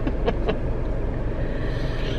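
Steady low hum of a car idling, heard from inside the cabin.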